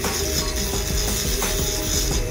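Ultrasonic dental scaler working on the teeth during a scaling and cleaning, a steady high hiss, with background music under it.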